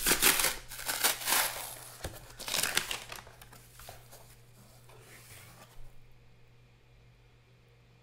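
Cardboard box being torn open by hand: a run of loud ripping and crinkling in the first three seconds, then quieter rustling as the flaps are folded back, dying away about six seconds in.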